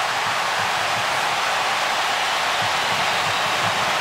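Large stadium crowd cheering in a steady, even wash of noise after the home goalkeeper's double save.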